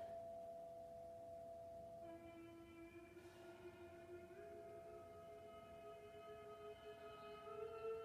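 Faint, slow background music of long held notes, with no beat. A lower note comes in about two seconds in and steps up in pitch twice.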